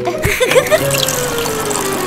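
Cartoon sound effect of orange juice pouring from a dispenser into a plastic bag, under background music.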